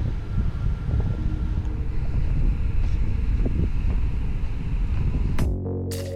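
Wind buffeting the microphone of a small action camera, an uneven noise heavy in the low end. About five and a half seconds in it gives way abruptly to electronic background music.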